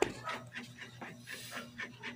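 A sharp click as a hand grabs the phone, then faint, quick breathy sounds repeating a few times a second.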